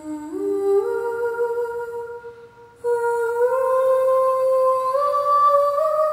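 Recorded music played through a pair of Tannoy Kingdom Royal loudspeakers and heard in the room: a slow, soft melody of long held notes that climb in small steps, with a brief break about two seconds in.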